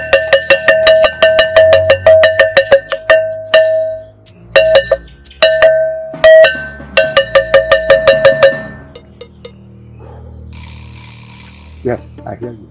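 A hanging metal bell struck rapidly with a stick, about five ringing strokes a second, in several runs with short breaks that stop about two-thirds of the way through. A low steady drone lies underneath.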